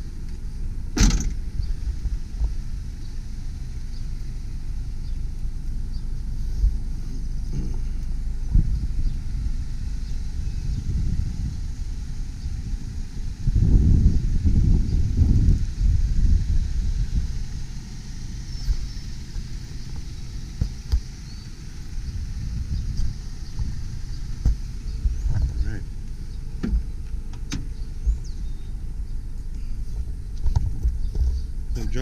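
Wind buffeting a camera microphone outdoors: an uneven low rumble, with a sharp click about a second in and a stronger gust around the middle.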